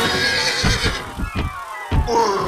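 A horse whinnying over orchestral film music, with a few sharp thuds like hooves or blows; the sound drops away briefly near the end before a loud hit.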